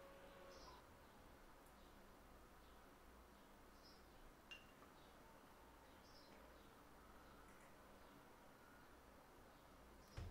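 Near silence: quiet room tone with a low steady hum, a few faint short high chirps and one soft tick.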